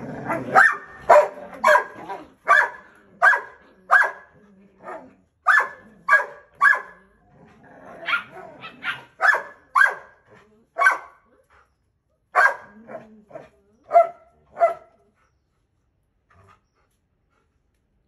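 Belgian Malinois puppy barking, a run of sharp, high-pitched barks in irregular bursts of one to two a second that stops about fifteen seconds in.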